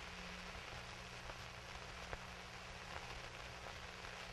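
Faint steady hiss and low hum of a worn 16mm film optical soundtrack, with a few faint clicks.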